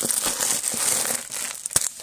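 Clear plastic wrapping around a bundle of saris crinkling as a hand presses and handles it. The crinkling is continuous, with a few sharper crackles.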